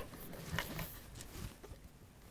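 Handling noise of a wood-stocked PCP air rifle being turned over in the hands: a sharp click right at the start, then faint rubbing and light knocks.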